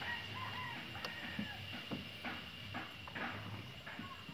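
Short bird calls in the first second and a half, over a few light knocks and a steady faint high tone.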